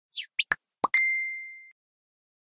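Logo-reveal sound effects: a few quick swishes and a pop, then a single bright ding that holds one pitch and fades away in under a second.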